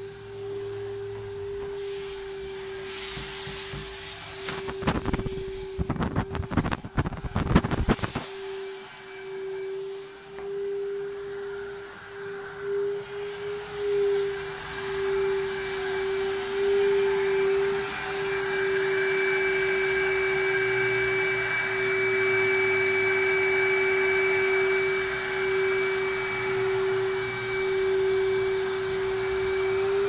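Carpet-cleaning extraction machine running with a steady vacuum whine, growing louder and joined by a second, higher whine about two-thirds of the way in. A few seconds in, a burst of clattering knocks lasts about three seconds.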